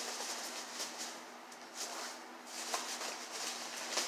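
Hands rummaging through foam packing peanuts in a cardboard box: an irregular rustling and crackling, with a plastic bag crinkling alongside.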